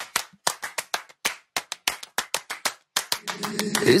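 Handclap-like percussion playing a rhythmic pattern of sharp hits, several a second, with no other accompaniment, in an a cappella pop song. Near the end, sung voices swell in under the hits, leading into the next line of the song.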